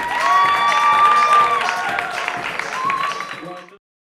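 Crowd clapping and cheering, with several long held shouts over the claps. The sound cuts off suddenly near the end.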